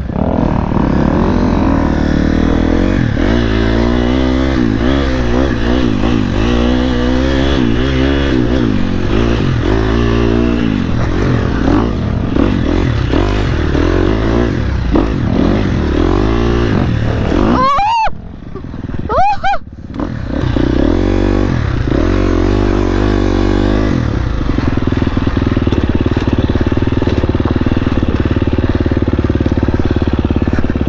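Dirt bike engine running while the bike is ridden along a trail, the revs rising and falling with the throttle. A little past halfway the engine drops back for about two seconds with a couple of quick revs, then runs steadier toward the end.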